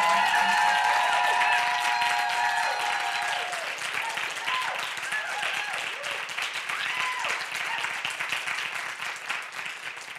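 Audience applauding and cheering, with high whoops over the clapping in the first few seconds and a few more later on; the applause slowly dies down.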